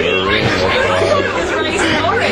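Several people chattering and talking over one another, with no single voice standing out.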